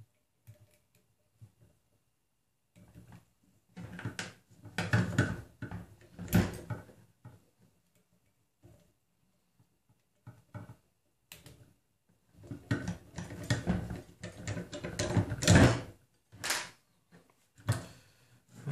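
Hand-tightening the grub screw on a stepper motor's belt pulley, with irregular clicks and clatter of metal parts being handled. The noises come in two spells, the second louder, with quiet stretches between.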